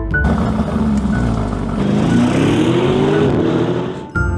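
Car engine running over a loud steady rushing noise, revving up about two seconds in and dropping back near the end.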